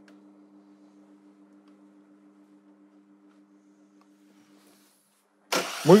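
A faint steady hum, then about five and a half seconds in a car's starter motor begins cranking the engine with a loud whirring noise. The crank is a spark test of the ignition module's fourth-cylinder output.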